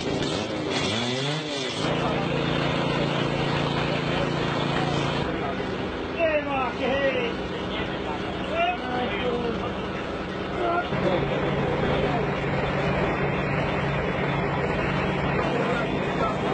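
A small engine running steadily, fainter for a few seconds in the middle, with people's voices over it.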